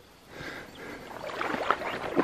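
Water sloshing and splashing around legs wading through a shallow river, in quick irregular splashes that grow louder after a quiet start.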